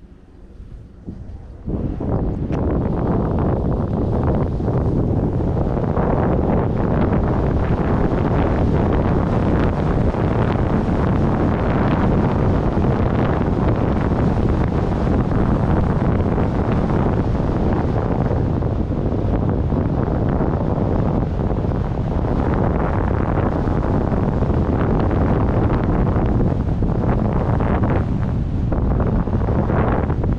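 Wind buffeting the microphone of a camera carried by a rider going downhill, mixed with the scrape of sliding over groomed snow. It comes in suddenly about two seconds in and stays loud and steady.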